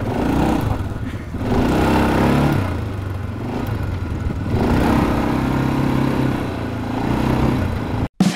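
Quad bike (ATV) engine running under way, its pitch and loudness rising and falling about three times as the throttle is opened and eased off.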